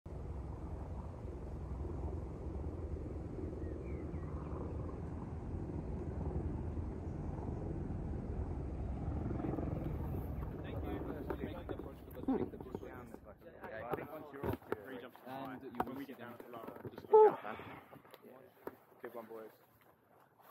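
A steady low rumble for the first dozen seconds, then people's voices talking close to the microphone, with one loud burst about 17 seconds in.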